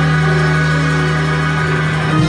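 Organ holding one sustained chord over a steady low note.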